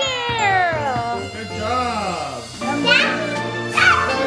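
A young child's excited squeal: one long cry falling in pitch over about two and a half seconds, then shorter rising-and-falling squeals near the end, over background music.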